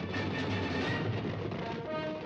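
Soundtrack of a black-and-white 1950s western: held orchestral chords over a steady rumbling, clattering noise.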